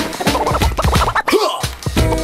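Hip-hop beat with turntable scratching: quick back-and-forth record scratches sliding in pitch over a kick-driven beat. The bass drops out briefly just past the middle.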